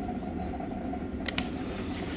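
Steady low background hum in a small room, with one sharp light click about two-thirds of the way through.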